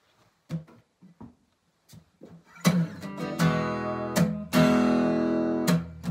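Acoustic guitar: a few faint taps and muted plucks, then strummed chords start about two and a half seconds in, the opening of a song, with several strong strokes that ring on between them.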